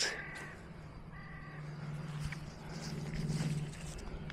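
A bird calling twice outdoors, two short clear calls about a second apart, over a low steady hum that swells near the end.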